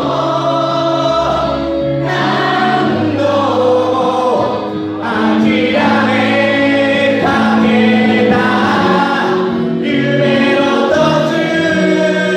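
A large group of people singing together in chorus while dancing hand in hand, in long held phrases with short breaks between them.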